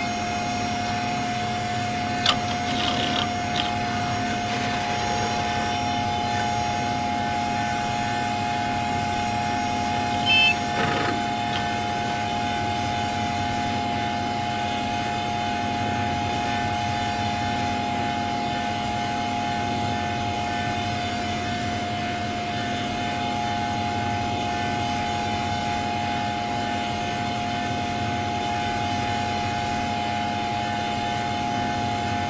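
An electronically distorted Windows system sound held as a steady synthetic drone: a high tone over a lower one. Brief chirps break in about two to three seconds in, and a short, louder blip comes about ten seconds in.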